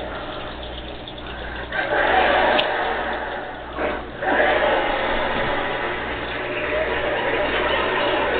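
Television comedy show audio: an audience laughing and clapping, swelling about two seconds in and again after a short dip, with indistinct voices.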